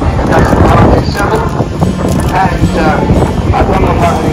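Indistinct voices talking over wind buffeting the microphone and a steady low rumble.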